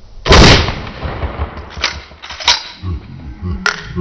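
A single 12-gauge pump shotgun blast from a Remington 870 fired at body armour, very loud and sharp, with a ringing tail for about half a second. Two fainter sharp cracks follow later.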